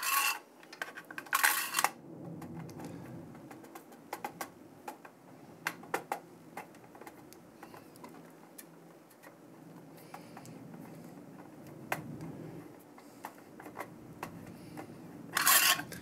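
Long screwdriver turning CPU-cooler mounting screws down through the aluminium fin stack: scattered light metallic clicks and ticks, with short scraping rustles at the start, about a second and a half in, and again near the end.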